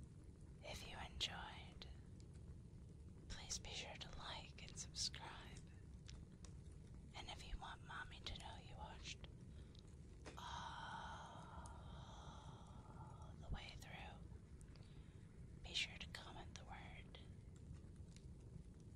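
Soft, close-miked whispering in several short phrases separated by pauses, with a few sharp mouth clicks.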